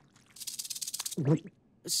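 Cartoon sound effect of a dangling mouthworm wriggling: a fast, high rattle lasting under a second. It is followed by a short nervous vocal noise.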